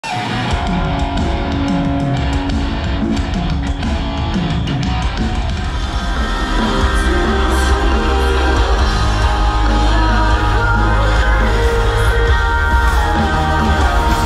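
Live band playing rock music through a concert PA system, with singing; the bass gets heavier about six seconds in.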